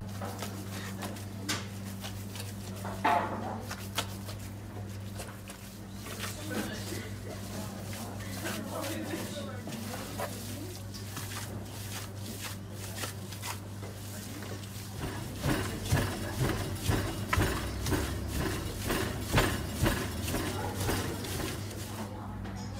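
Gloved hands kneading a thick, oily çiğ köfte paste of bulgur, isot pepper and spices in a large metal bowl: irregular wet squelches and slaps, busier and louder in the last few seconds, over a steady low hum.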